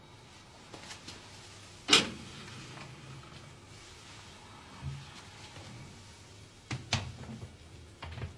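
A few knocks and clatters of glass jars and a metal oven shelf being handled in a gas oven: a sharp clatter about two seconds in, a dull thump a few seconds later, and a quick double knock near the end.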